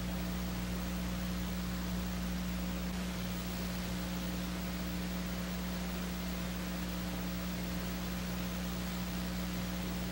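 Steady hiss with a low electrical hum underneath: the noise floor of an old analog video recording, with nothing else sounding.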